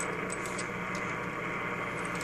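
Amateur radio HF receiver playing steady static from its speaker, tuned to an empty frequency with the RF gain all the way up. The hiss is mostly atmospheric noise picked up by the antenna, with only a slight amount of common mode noise on the feedline shield.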